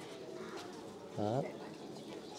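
A pigeon cooing once, briefly, a little over a second in, over a faint steady background.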